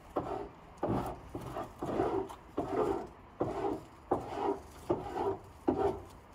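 Repeated scraping or rubbing strokes on wood, about one and a half a second. Each starts with a sharp click and trails off into a brief rasp.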